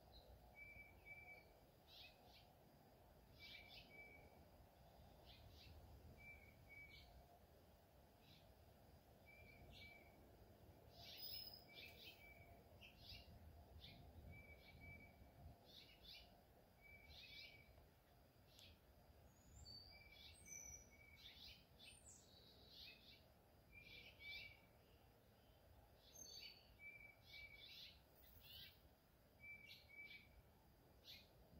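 Faint bird-like chirping: short chirps and pairs of brief high notes, repeating every second or two.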